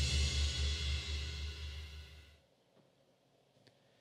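Punk rock song ending: the final chord and cymbals ring out and fade away over about two and a half seconds, leaving near silence.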